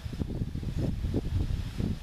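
Wind buffeting the microphone: an uneven, gusty low rumble that rises and falls with no steady tone.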